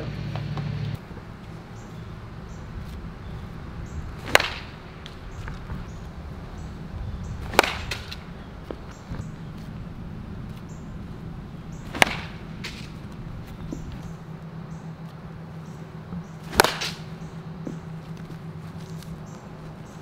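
Four sharp cracks of a wooden baseball bat hitting baseballs off a tee, spaced three to four and a half seconds apart. Fainter knocks follow the last two, over a steady low hum.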